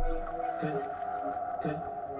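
Soft background music: a held tone with a short figure repeating about once a second.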